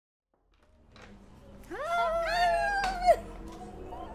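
Excited high-pitched squeals of women greeting each other, drawn-out and partly overlapping, starting about a second and a half in, with a sharp clap-like knock near the end.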